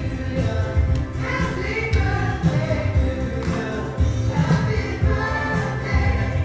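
Recorded birthday song: a group of voices singing over a band with a steady bass beat.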